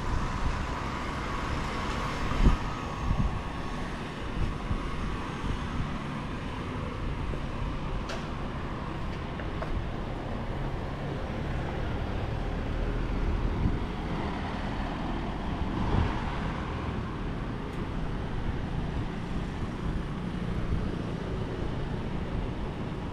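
Wind rumbling and buffeting on the microphone, a steady low rumble with a few brief thumps, over faint open-air background noise.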